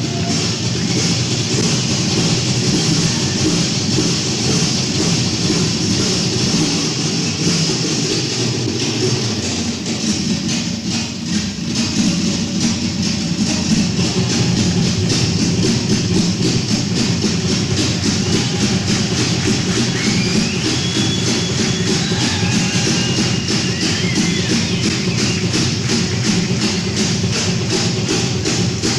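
Heavy metal band playing live, electric guitar, bass and drums in a dense, continuous wall of sound, with a few sliding pitch bends up high about twenty seconds in.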